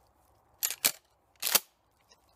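Handling clicks from a Remington 870 pump-action 12-gauge shotgun: two quick clicks a little over half a second in, and a sharper, louder one about a second and a half in.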